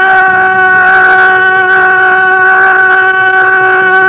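A Mising folk song: one long held note at a steady pitch, over a low rhythmic accompaniment that comes in a moment after the start.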